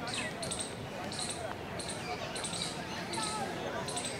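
Small birds chirping in the background, short high calls repeating about twice a second over a steady ambient hiss.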